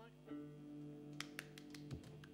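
Faint held notes from the band's amplified instruments ringing on between songs, with a few light clicks a little past a second in.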